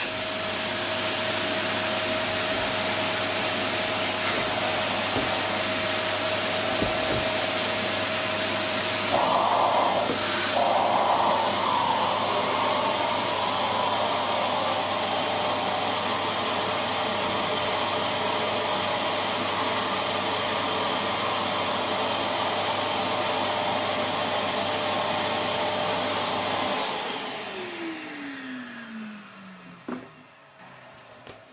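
Vacuum cleaner drawing air through a core-drill dust shroud, running steadily, with a louder rushing surge around nine to twelve seconds in. Near the end it is switched off and its motor winds down with a falling pitch.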